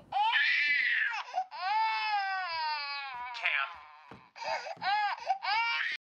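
Baby crying: short wails at first, then one long wail from about a second and a half in that slowly falls in pitch and fades, then more short, rising-and-falling wails near the end.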